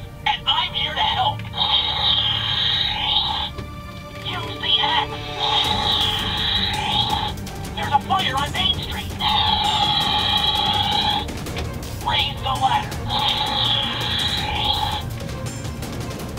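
Electronic sound effects from a Rescue Bots Heatwave the Fire-Bot toy's speaker, set off by pressing its chest button: a wailing, siren-like sound rising and falling four times, with short choppy electronic sounds or voice clips between.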